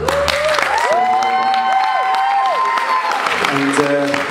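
Audience applauding, with long, held whoops of cheering rising over the clapping and falling away near the end.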